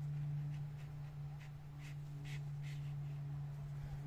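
A steady low hum, with about six faint short sounds coming roughly half a second apart.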